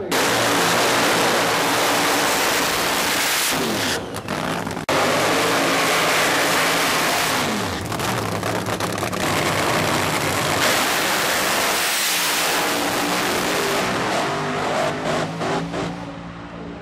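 Supercharged nitro funny car engines at full throttle, a loud steady blast that spins the tyres in a smoky burnout partway through. The sound breaks off briefly around four and five seconds in and eases near the end.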